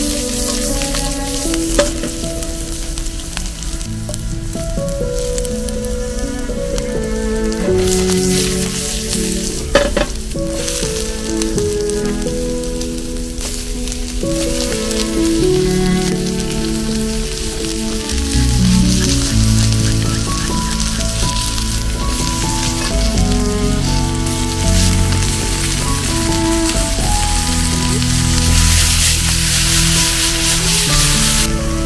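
Vegetables and whole garlic sizzling in oil in a cast-iron skillet over a wood fire, with the pan tossed and stirred now and then. The sizzling grows louder near the end as onion and tomatoes go in. Instrumental background music plays throughout.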